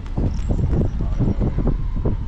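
Car on the move: a loud low rumble of road noise, with wind buffeting the microphone in irregular gusts.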